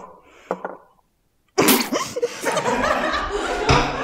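A few short, sharp sounds in the first second, then about one and a half seconds in, a group of people burst out laughing loudly and keep laughing.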